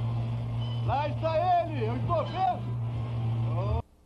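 A motorboat engine runs with a steady low drone while a voice calls out over it, rising and falling, about a second in. Near the end the sound cuts off abruptly as the VHS tape stops, leaving only a faint hum.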